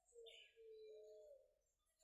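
Faint, distant bird calls: a few short whistled notes that slide slightly up and down in pitch.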